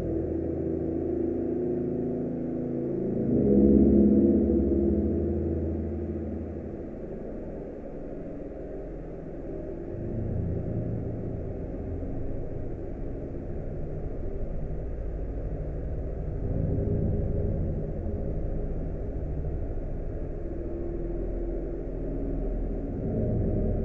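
Dark ambient music: a muffled, droning wash of sustained low tones with no high end, swelling about three to four seconds in. It is built from old ballroom dance-band records smeared with heavy reverb.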